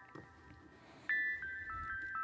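Music played back from a multitrack song mix. It is faint for the first second, then a few high, sustained notes come in one after another about a second in.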